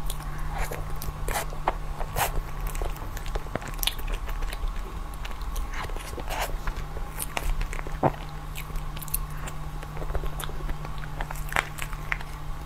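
Close-miked mouth sounds of eating a soft taro-paste cream cake from a spoon: wet smacks and chewing, heard as many scattered irregular clicks over a steady low hum.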